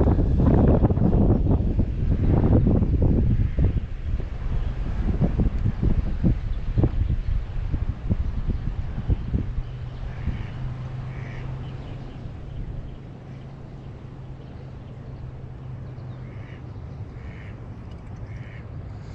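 Water sloshing around the legs of someone wading in a river, with wind on the microphone, busy for the first nine seconds and then easing off. A few faint bird calls come about ten seconds in and again in a short series near the end.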